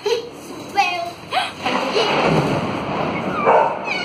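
A loud thunderclap that rumbles on for about two seconds, starting about a second and a half in.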